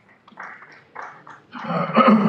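A person coughing: two short coughs about half a second apart, then a louder, longer cough near the end.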